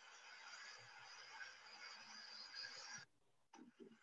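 Near silence: faint steady hiss of room tone that cuts out abruptly about three seconds in, followed by a few faint ticks.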